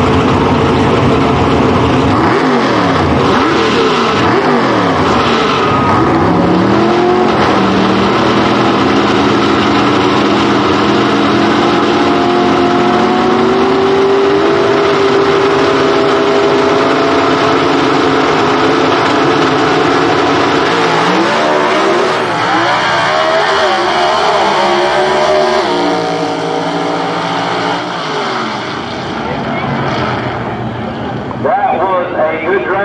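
Two A/Gas gasser drag cars' engines revving up and down on the starting line, then held at high revs. About two-thirds through they launch, the pitch stepping up through gear changes as the sound fades away down the strip.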